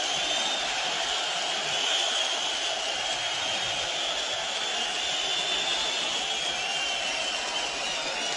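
Steady crowd noise in an arena, an even wash of sound with no single shouts, blows or announcements standing out.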